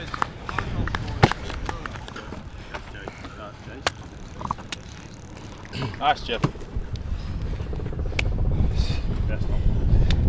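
Training-ground sounds: scattered voices and brief calls, a few sharp knocks, and a low rumble that grows louder over the last few seconds.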